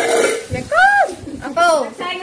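A person's voice making two short, high-pitched wordless calls about a second apart, each rising and then falling in pitch.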